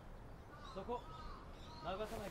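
Crows cawing faintly, a few short caws close together about half a second in and another near the end, over quiet outdoor background.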